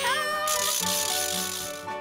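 Bouncy cartoon party music. A meow-like call glides up and down at the very start, then a high hiss runs for about a second and a half.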